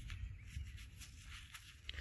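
Faint outdoor ambience: a steady low rumble with a few light scuffs of a gloved hand in loose soil.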